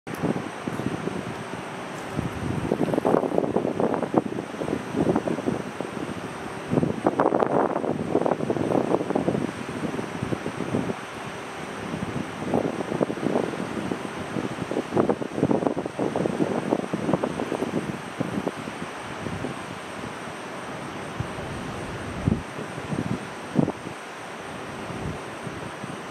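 Wind buffeting the microphone in irregular gusts over a steady outdoor hiss.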